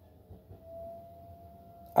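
A faint, steady single-pitched tone, like an electronic hum, comes in about half a second in and holds on; the man's voice starts again right at the end.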